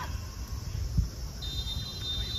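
A referee's whistle gives one steady high blast starting about one and a half seconds in: the signal for kick-off. Under it runs a low rumble, with a thump about a second in.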